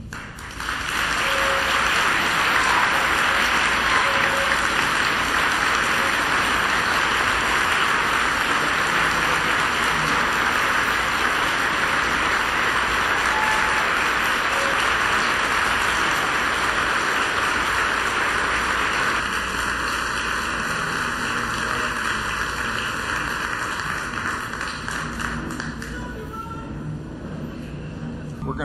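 Audience applauding, a long dense ovation that starts right away, eases somewhat past the midpoint and dies down near the end.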